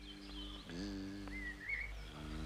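Faint, steady low buzzing hum of a bee sound effect for the flying toy bee, shifting slightly in pitch a little under a second in, with a faint high whistling chirp around the middle.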